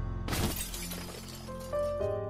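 A crash with glass shattering about a quarter second in: a tube television toppling off a dresser onto the floor and breaking, its noise dying away over about a second. Music plays under it, and soft sustained notes come in near the end.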